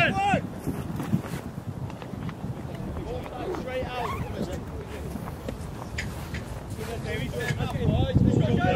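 Scattered shouts and calls from football players and touchline voices, a few short calls near the start, around the middle and near the end, over a steady low rumble.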